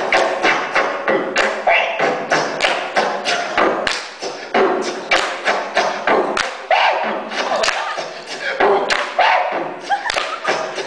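Human beatboxing into a handheld microphone played through a small speaker: a quick, steady beat of vocal kick, snare and click sounds, with short hummed and voiced tones mixed in.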